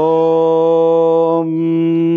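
A man chanting one long held syllable of a prayer or mantra, sliding up slightly into the note and then holding it at a steady pitch.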